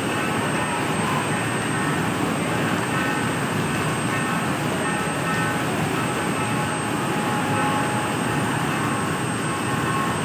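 Rain floodwater rushing fast over a paved stone floor: a steady, unbroken noise of flowing water at a constant level.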